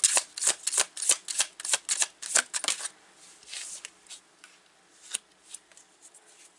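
Tarot cards shuffled by hand: a quick run of snapping riffles for about three seconds, then softer sliding and a few light taps as a card is drawn and laid on the table.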